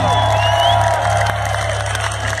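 Loud live rock band at the close of a song, its amplified final chord ringing out as a steady low drone through the PA, with the crowd cheering and whooping over it.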